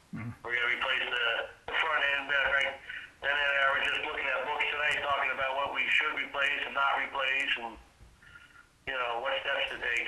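Speech only: a person talking over a telephone line, the voice narrow and thin.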